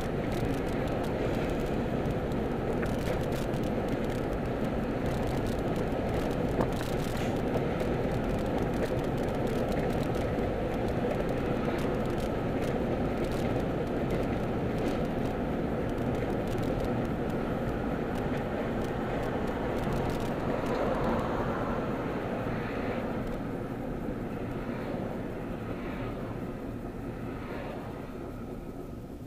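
Steady road noise inside a moving car's cabin: engine, tyre and wind noise at cruising speed, getting quieter over the last few seconds.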